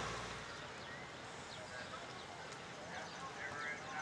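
Faint outdoor ambience with distant voices and a few soft clops of a horse's hooves on arena sand.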